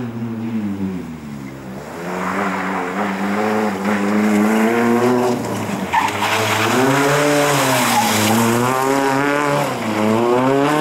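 A Nissan Sunny rally car's engine revving hard, its pitch rising and falling repeatedly as the driver lifts and accelerates, growing louder as the car approaches. Tyre noise from the loose, gritty surface comes over it as the car corners.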